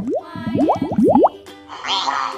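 A quick run of about ten rising 'bloop' plop sound effects, like water drops, in the first second and a half, over children's background music. Near the end a raspy chattering call begins.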